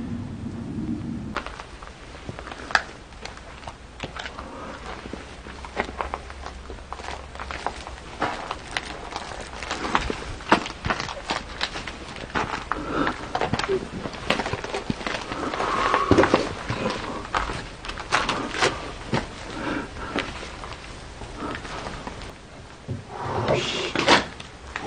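Footsteps crunching over weeds and debris on a concrete floor, with many small irregular clicks and crackles.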